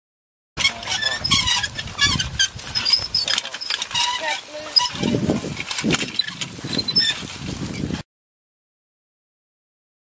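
Field sound of a draft-animal toolbar working soil: clicks and knocks of the implement moving over the ground, mixed with people's voices. It starts about half a second in and cuts off abruptly about eight seconds in.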